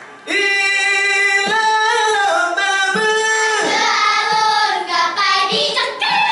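A group of girls singing a chant together, starting a moment in after a brief gap, with a few short percussive strikes.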